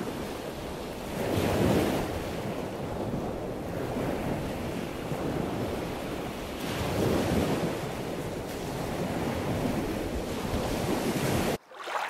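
Steady rushing of water with slow swells, cutting off suddenly near the end.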